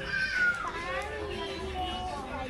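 High-pitched children's voices calling out and chattering, the loudest a drawn-out call that slides down in pitch in the first second.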